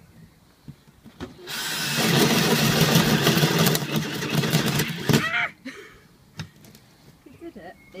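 Cordless drill with a flat spade bit boring into plywood: the motor starts about a second and a half in, comes up to full speed as the bit bites, runs under load for about three seconds and then stops abruptly.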